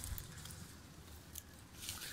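Faint scattered clicks and rustles of a man shifting his hold on a tree branch while handling a phone, a few short crisp ticks over the two seconds.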